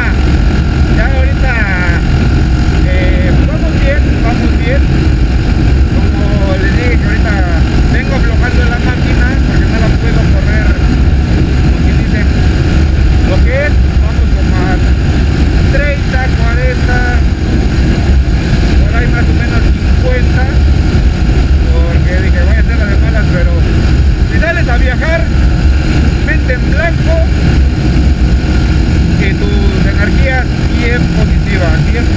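Motorcycle ridden at highway speed: a steady, loud rumble of engine and wind noise on the mounted microphone, with a voice-like sound coming and going over it.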